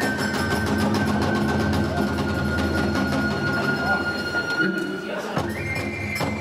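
Iwami kagura music: a fue flute holds one long note over a steady low accompaniment, and the flute steps up to a higher note near the end. The drum and cymbal strikes heard just before mostly drop away, with a few strikes near the end.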